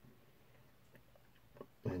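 Quiet room tone with one faint click about a second and a half in, then a man's voice starting again near the end.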